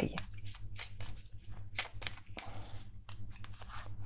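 A deck of Tarot de Marseille cards being shuffled by hand: an irregular run of short, soft card clicks and slaps as the cards are passed from hand to hand.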